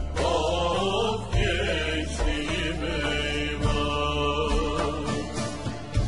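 Slow Turkish folk-song music: a long-held, wavering melody over a steady low drone, with a low thud about once a second.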